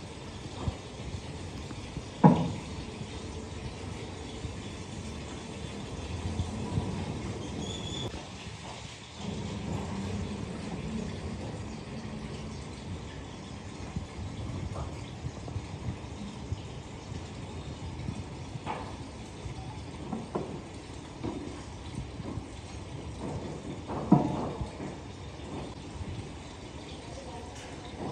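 Heavy toilet casting mold sections knocking as they are lifted and set down: two loud knocks, one about two seconds in and one near the end, and a few lighter ones between, over a steady background noise.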